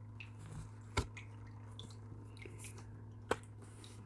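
Tarot cards being handled at a table: two sharp card snaps or taps, about a second in and a little after three seconds, with a few faint ticks between, over a steady low hum.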